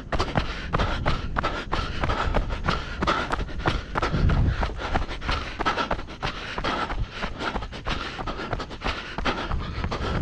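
A trail runner's footsteps striking a dirt and gravel path in a steady rhythm of about three strides a second, with the runner's hard panting breaths.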